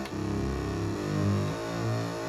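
Arturia MicroFreak synthesizer playing its FM oscillator engine: a run of low, pitched synth notes that steps in pitch several times a second.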